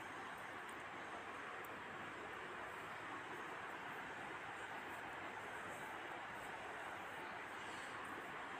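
Onion pakoras deep-frying in hot oil, freshly dropped in: a steady sizzle with fine crackles as the oil bubbles hard around the batter.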